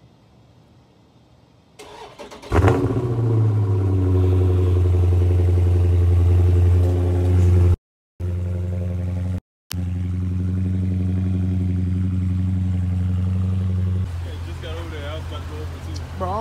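Dodge Charger V8 started up: the starter cranks briefly, the engine catches with a sharp rev flare about two and a half seconds in, then settles into a steady, deep idle. The sound drops out completely twice for a moment, and near the end voices talk over a quieter engine.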